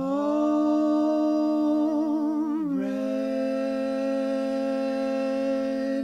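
Background song: a voice holds a long hummed note with a wavering vibrato, then slides down to a lower note held for about three seconds.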